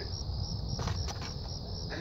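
Steady high-pitched trill of a cricket, finely pulsed, over a low rumble, with a couple of faint clicks about a second in.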